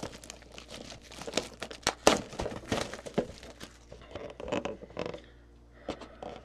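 Clear plastic shrink wrap being peeled and crinkled off a cardboard trading-card box, in irregular crackles with a sharp crack about two seconds in, dying away near the end.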